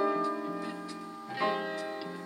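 Instrumental passage of an Italian pop song with no singing: a chord struck at the start rings and fades, and another is struck about a second and a half in, with faint light ticks over it.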